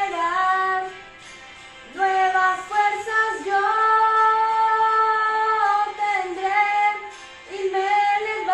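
A young woman singing a Spanish-language worship song solo, with a short pause about a second in and a long held note in the middle.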